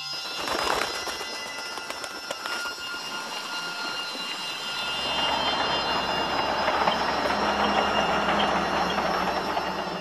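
Rice-processing machinery running, with a dense rushing, rattling noise of grain pouring. It starts suddenly with a few sharp clicks, and a low steady hum joins about halfway through as the rush grows louder. Faint held music tones sound underneath.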